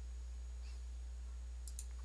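Steady low hum with faint background hiss, and a couple of faint computer mouse clicks near the end.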